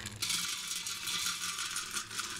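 Hardwood pellets poured into a metal funnel hopper, a steady stream rattling and pattering on the metal and on each other, starting about a quarter second in.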